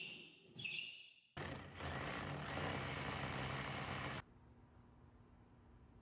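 A power drill running for about three seconds, cutting through drywall. It starts and stops abruptly.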